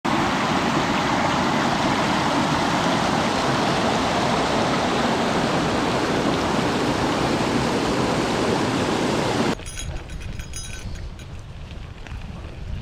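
A mountain creek rushing and cascading over rocks and logs: a steady, loud wash of whitewater. About three quarters of the way through it cuts off suddenly to a much quieter low rumble with light rattles as a gravel bike rolls down a dirt trail.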